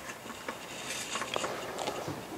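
Plastic base nut being spun by hand onto the threaded outlet of a toilet cistern's flush mechanism: faint scratchy rubbing with a few light clicks.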